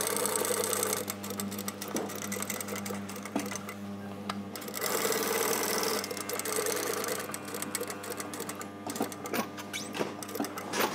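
Sewing machine stitching around a pocket bag at a short 1.2 mm stitch length, running steadily with louder spells near the start and around the middle. A few small clicks near the end.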